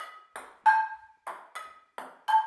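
A small ball batted back and forth with frying pans. Each hit gives a sharp, ringing metallic ping from the pan, alternating with shorter, duller taps of the ball bouncing on a wooden table, about three impacts a second.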